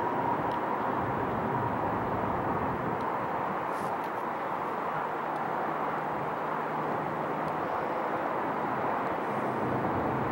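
Steady outdoor background rush with a faint hum, even in level throughout and without any distinct event.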